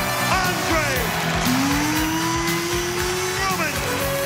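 Arena PA music with a steady pounding beat, and an announcer's amplified voice over it, with one long drawn-out rising note through the middle that falls away near the end.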